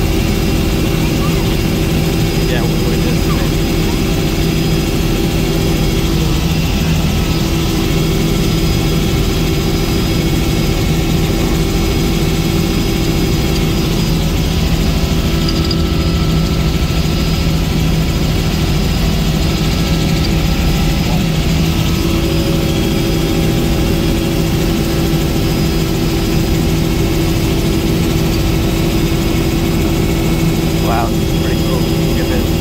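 Helicopter engine and rotors running in steady flight, heard from inside the cabin as a loud, even drone with a constant low hum.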